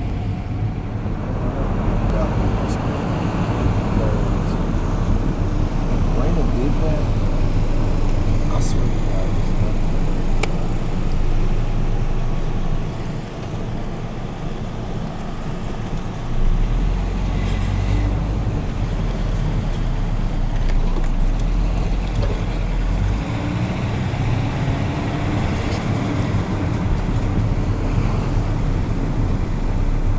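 Steady low rumble of a car driving slowly, road and engine noise heard from inside the cabin.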